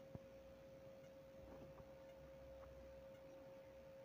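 Near silence: a faint steady single-pitched hum, with a few faint clicks.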